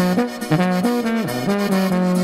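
Oberkrainer polka band playing an instrumental passage: a brass melody in held notes over the band's backing.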